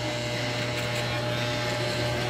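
Electric hair clippers running with a steady low buzz as they cut short hair at the nape during a fade.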